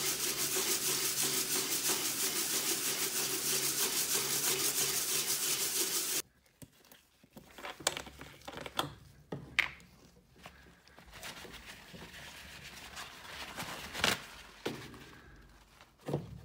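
Plastic pipe sleeve rubbed by hand on a sheet of sandpaper, a steady, rapid gritty scraping as its end is ground flat. It cuts off abruptly about six seconds in, leaving quiet handling sounds: faint rustles and a few small clicks.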